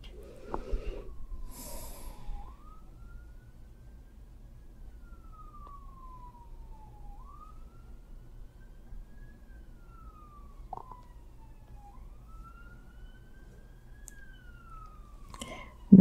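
Emergency-vehicle siren wailing faintly, its pitch slowly rising and falling about every five seconds.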